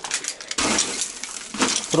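Rotted, rusted-through metal crunching and crumbling as it is broken apart by a foot, with small bits of debris clinking and scraping. The crunching is loudest from about half a second in to about a second and a half.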